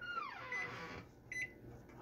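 Short, high, steady beeps from a Panasonic microwave oven at the end of its heating cycle, a faint one about half a second in and a clearer one with a click about 1.3 s in. A faint falling glide is heard in the first second.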